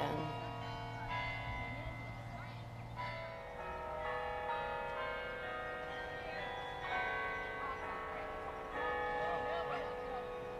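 Slow, ringing bell-like music: groups of notes sound about 3, 7 and 9 seconds in and are held.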